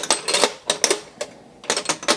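Chrome steel spanners and ratchets clinking against each other in a metal toolbox drawer as they are handled: several sharp, irregular clinks, each with a short metallic ring.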